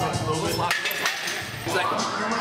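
Gym sound: people talking over background music, with a few light metallic clinks.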